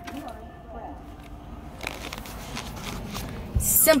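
Quiet car-cabin hum with a few faint handling clicks and a soft low knock near the end, from a candy bag being handled close to the microphone.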